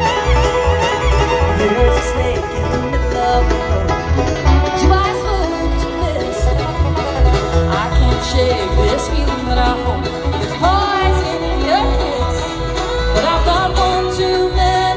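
A live bluegrass band plays an instrumental break: the fiddle is out front at the start, over banjo, acoustic guitar and an upright bass keeping a steady pulse.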